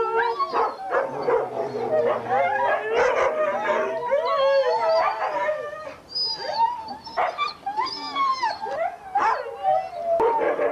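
A group of Siberian huskies howling and yipping together, many voices wavering and overlapping without a break.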